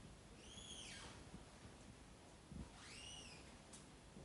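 Near silence broken by two faint, high-pitched squeaks about two seconds apart, each rising and then falling in pitch.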